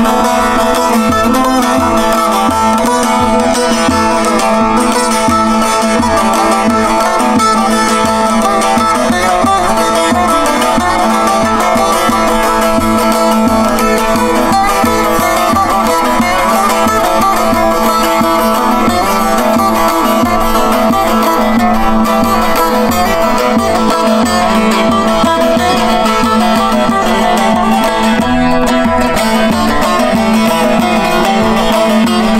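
Solo bağlama (Turkish long-necked saz) playing a folk melody: quick, densely plucked notes over a steady drone from the open strings, without a break.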